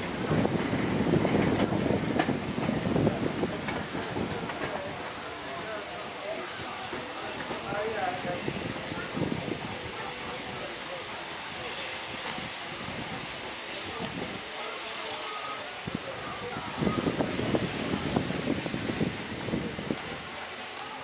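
A steam-hauled passenger train pulling away and fading into the distance, with people talking nearby and wind on the microphone.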